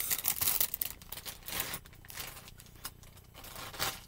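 Plastic packaging crinkling and rustling as it is handled and opened, in irregular bursts that are busiest in the first second and then come in short, quieter rustles.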